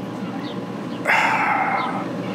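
A dog barking, one short run of barks starting about a second in and lasting under a second.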